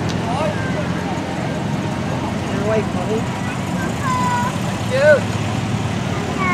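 Onlookers' voices chattering over the steady low running of classic British sports car engines, an MGA and then a Triumph Spitfire, as the cars drive past.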